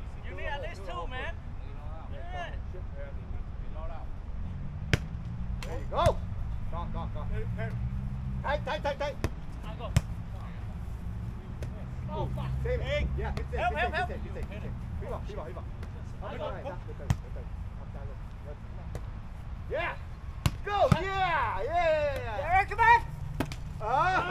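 A volleyball being played on grass: several sharp slaps as players strike the ball with their hands and forearms during a rally, with players' voices and short calls around them. A low steady rumble runs underneath.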